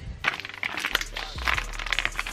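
Plastic bag crinkling and rustling as a hand grabs and handles it, a dense run of irregular crackles.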